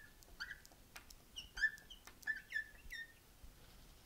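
Marker squeaking on a glass light board as a word is written: a quick run of short high squeaks with small ticks between, stopping about three seconds in.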